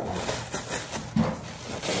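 White printed wrapping paper crinkling and tearing as it is ripped open by hand around a folded garment, with a brief low sound just after a second in.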